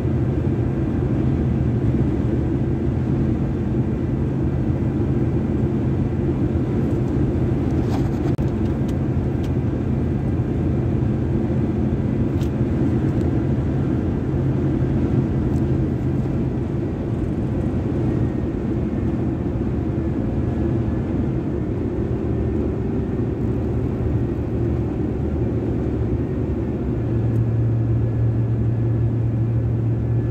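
Steady low drone of tyres and engine heard inside a pickup truck's cab while cruising on the highway. A low hum in the drone grows louder near the end.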